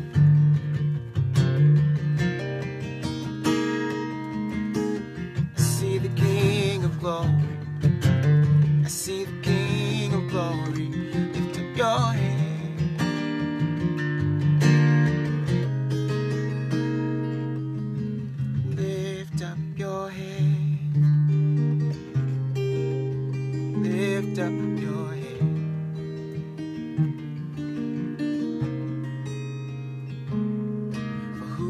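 Acoustic guitar with a capo, played in slow, ringing chords that change every second or two.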